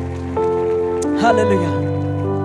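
Soft, sustained keyboard chords played beneath the preaching, shifting to a new chord twice; a short spoken syllable breaks in a little over a second in.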